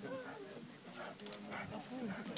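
Faint sounds from a setter dog on a leash, with quiet background talk.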